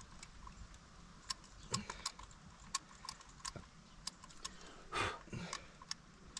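Small sharp clicks from the combination dials of a small key safe being turned and set by hand, with the lock box being handled. One louder brushing sound about five seconds in.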